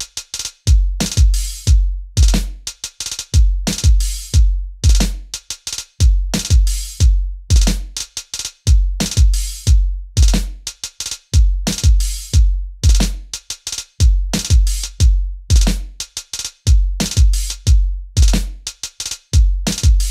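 Programmed drum-machine loop from Logic Pro's 'Boom Bap' kit playing at 90 BPM: a deep kick, snare and hi-hats, with the hi-hats broken into quick note-repeat rolls of two to four hits per step.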